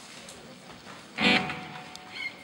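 A single chord strummed on an acoustic guitar a little over a second in, left to ring and fade.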